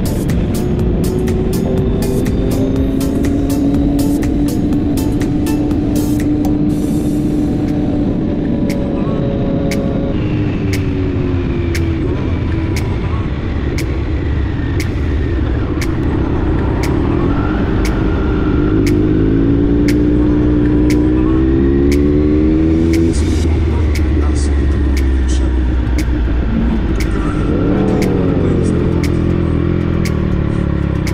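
Motorcycle engine heard from on board, its pitch rising and falling with the throttle and dropping at several gear changes, over a steady low rumble of wind and road noise.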